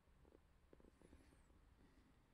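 Near silence: room tone with a few faint, short low rumbles.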